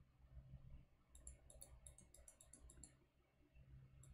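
Near silence: a quick run of faint computer mouse clicks between about one and three seconds in, over a low steady hum.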